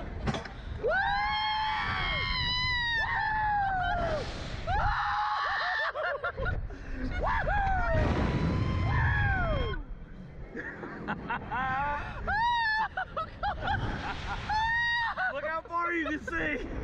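Riders screaming and shrieking on a slingshot reverse-bungee ride, a run of high, rising-and-falling screams in the first few seconds and another near the end, over rushing wind on the microphone.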